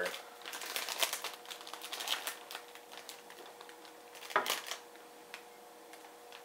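Plastic chip bag crinkling and crackling as it is torn open and handled, in quick irregular crackles with one louder rustle about four and a half seconds in.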